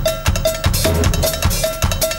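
Drum solo on a drum kit: a cowbell struck in a steady pattern about four times a second over bass drum beats.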